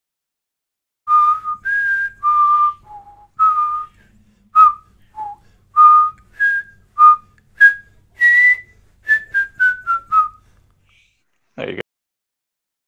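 A person whistling a tune: about twenty short notes that step up and down in pitch, ending in a quick run of five falling notes.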